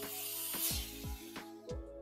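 Dental suction hoses (high-volume evacuator and saliva ejector) switched on and hissing as they draw in air, starting abruptly and fading after about a second, over background music.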